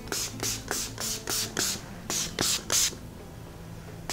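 Beauty Creations Flawless Stay setting spray pumped from its mist bottle onto the face: a quick run of short hissing sprays, about four a second, stopping about three seconds in.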